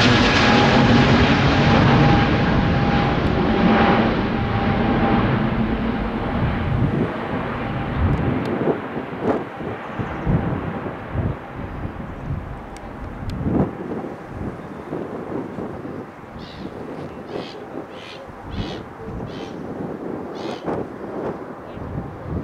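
Airbus A320neo with CFM LEAP-1A turbofans climbing out at takeoff power and passing overhead. The jet roar, with a steady hum of engine tones, is loud at first and fades and grows duller as the aircraft climbs away.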